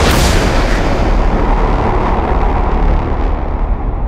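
Logo-sting sound effect: a sudden loud cinematic boom that fades into a sustained deep rumble.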